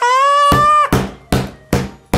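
A man's high-pitched, held shriek of laughter lasting just under a second, followed by about four heavy thumps roughly every 0.4 s, a hand pounding a wooden desk.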